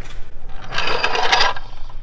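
A burst of metallic rattling and scraping, about a second long, from a steel low-profile floor jack being rolled across concrete into place.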